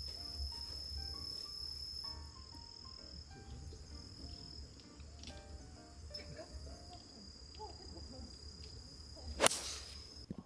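Faint, steady high insect trilling over a low outdoor rumble. About nine seconds in comes a single sharp crack of a golf club, a 6-iron, striking the ball.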